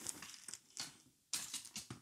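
A few short rustles and scrapes as a light stand is handled and moved closer, the clearest just under a second in and around a second and a half in.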